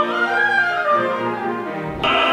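Opera orchestra playing a short instrumental passage led by the strings, no voice, the melody climbing and then stepping back down.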